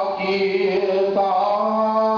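A man's solo voice chanting Islamic devotional verses in long, melodic held notes into a microphone. There is a brief break about a second in before the next sustained note.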